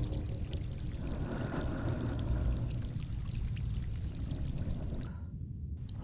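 Running water, a steady pour that cuts off about five seconds in.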